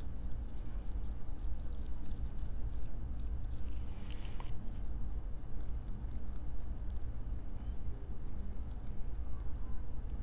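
Small brass wire brush scrubbed lightly across a nickel-plated hotend heater block, making soft, irregular scratchy strokes as it clears off leftover paste. A low steady hum sits underneath.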